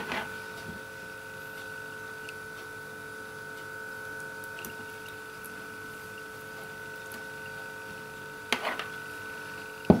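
Steady mechanical hum holding a few fixed tones, with a few faint ticks. About eight and a half seconds in comes a short voice-like sound, and just before the end a sharp knock.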